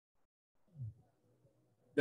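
Quiet hall room tone with faint murmuring voices. A brief, slightly louder voice sound comes a little under a second in.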